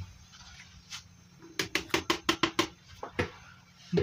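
A quick run of light taps, about eight in just over a second, with single taps before and after, as wheat flour is shaken out of a plastic tub into a plastic mixing bowl.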